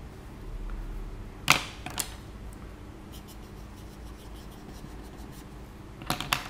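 Two sharp clicks about half a second apart, then faint short scratchy strokes of a felt-tip marker drawing on paper.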